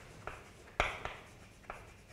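Chalk writing on a blackboard: a few sharp taps and short scratches as a word is written, the strongest tap a little under a second in.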